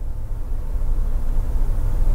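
Steady low rumble with a faint hiss above it, background noise on the broadcast audio with no voice.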